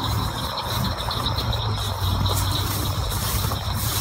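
A steady low mechanical hum, like an engine running, under a continuous high, finely pulsing trill of night insects.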